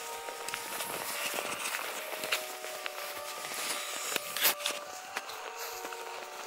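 Footsteps brushing through long grass, with one sharper knock about four and a half seconds in.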